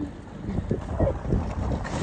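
Wind buffeting the microphone over the uneven rumble and rattle of a metal shopping cart rolling across parking-lot asphalt.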